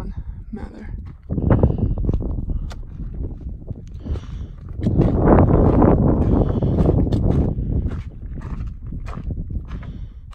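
Footsteps crunching on a rocky, gravelly mountain trail, many short scuffs and clicks, over a heavy low rumble on the microphone that is loudest from about five to seven seconds in.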